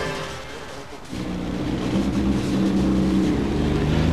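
Racing car's 1.6-litre Lada engine running at a steady pitch. It dips briefly in level about a second in, then comes back stronger.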